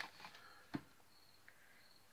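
Near silence with faint handling of a cardboard box, and one soft tap about three-quarters of a second in.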